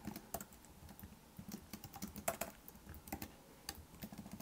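Typing on a computer keyboard: faint, irregular key clicks, with a few slightly louder strokes.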